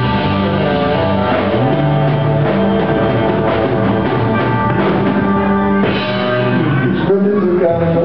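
Live rock band playing a slow ballad, saxophone leading over electric bass, keyboards, drums and electric guitar, with a sharper accent near the end as the song nears its close.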